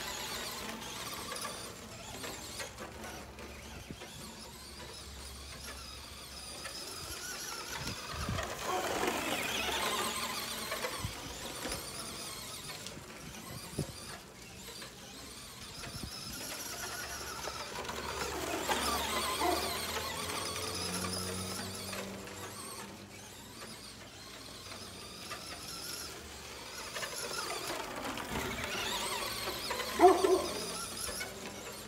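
Traxxas Slash two-wheel-drive RC truck's electric motor whining as it drives laps. The whine rises and falls in pitch with the throttle and swells about every ten seconds as the truck comes round.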